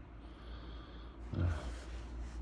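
Low steady hum, then a man's short 'uh' with an audible breath near the end.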